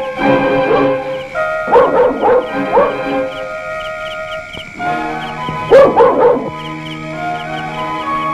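Film score of long held tones with a light ticking figure, with a dog barking over it in two short runs of a few barks each, about two seconds in and again about six seconds in.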